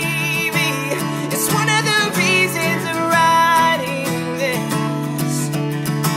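A man singing a pop-rock song while strumming a Taylor acoustic guitar.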